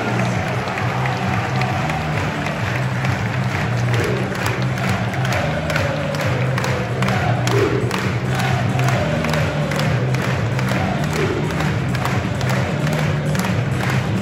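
Football stadium crowd cheering and clapping over music from the stadium PA. The clapping grows dense from about four seconds in.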